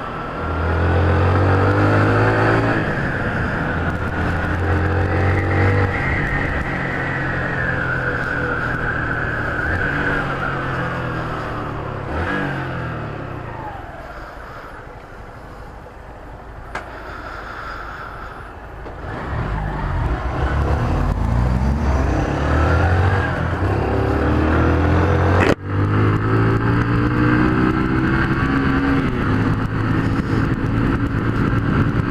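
Honda CG 150 Fan's single-cylinder four-stroke engine pulling through the gears, its pitch rising in repeated climbs. It drops to a quieter stretch at low revs in the middle, then revs up and climbs again, with one sharp click about three-quarters of the way through.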